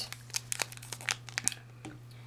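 The crinkly wrapper of a sealed baseball card pack crackling as it is turned and handled, a scatter of small irregular crackles that die away near the end.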